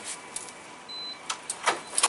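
A single short, high electronic beep from a wall keypad access reader about a second in, then several sharp clicks of a metal door lever and latch as the door is unlatched and pulled open.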